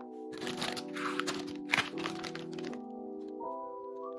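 Background music with a steady melody, over crackling and crinkling from handling bread slices and a plastic packet of sliced ham, starting about half a second in and dying away before three seconds, with one sharp crack partway through.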